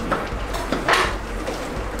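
Chef's knife slicing strawberries on a wooden cutting board, with knocks of the blade against the board, the loudest about a second in.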